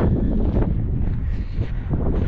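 Wind buffeting a handheld camera's microphone, a loud, uneven low rumble.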